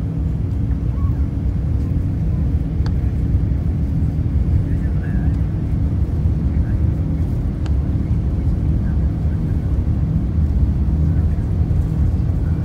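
Steady low rumble of a jet airliner heard from inside the cabin as it taxis: engines running and wheels rolling, with two faint clicks.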